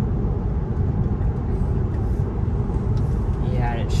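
Steady road and tyre noise heard inside the cabin of an electric Tesla at highway speed, a low even rumble with no engine sound.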